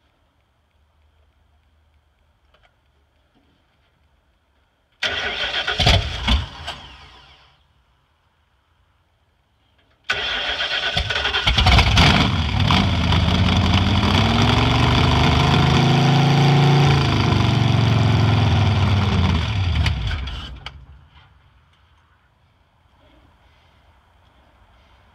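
Ford 460 big-block V8 that has not run in a long time, started on open headers: about five seconds in it cranks and fires briefly, then dies within about two seconds. About ten seconds in it catches and runs loudly for about ten seconds, its pitch rising and falling as it is revved, then shuts off.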